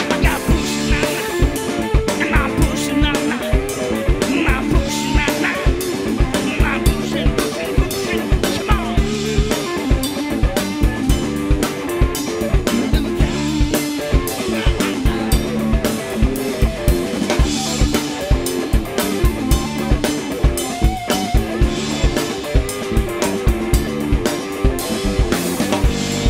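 Live band playing an instrumental passage: electric guitar riffing over a bass line and a drum kit keeping a steady, even beat.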